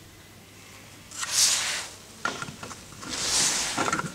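Plastic cover of a wall-mounted underfloor-heating thermostat being handled and pressed back onto its base: two soft hissing swishes of plastic rubbing, each about a second long, with a few light clicks between them and near the end.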